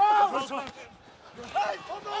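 Men's voices calling out on a rugby pitch, in two short bursts with a brief lull between, the words unclear.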